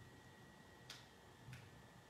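Near silence, with two faint light taps, about a second and a second and a half in, from paper card pieces being pressed and handled on a tabletop.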